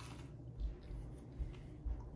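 A person faintly chewing a bite of a cheese sandwich, with a few soft bumps.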